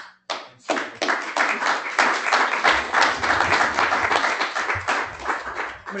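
Audience applauding, starting with a few separate claps and filling in to steady applause after about a second.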